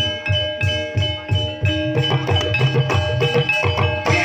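Gamelan music accompanying an ebeg trance dance: ringing metallophone notes over a steady drum beat, the playing growing busier about halfway through.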